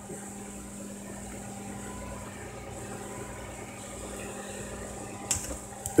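Turntable motor running with a steady low hum and a faint whir, with a sharp click shortly before the end.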